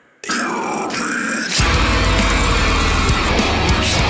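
Downtempo deathcore song: the band cuts out for a moment, then a harsh growled vocal comes in over thin guitar, and the full band with heavy low guitars and drums crashes back in about one and a half seconds in.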